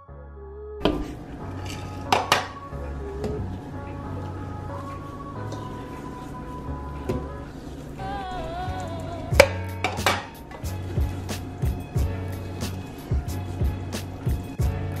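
A silicone spatula scraping and knocking against a stainless steel mixing bowl while stirring thick cake batter, with sharp clinks that come more often in the second half, over background music.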